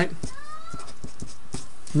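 Hand writing with a marker: a brief squeaky glide and a run of light ticks, about five a second.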